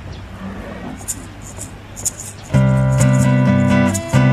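Live band music: a quieter stretch with a few short maraca shakes, then about two and a half seconds in an acoustic guitar and bass guitar come in with a loud, sustained chord, with maraca shakes over it.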